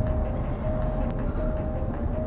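Low steady rumble of a car's engine and tyres heard inside the cabin while driving, with a thin steady tone that breaks off and resumes over it.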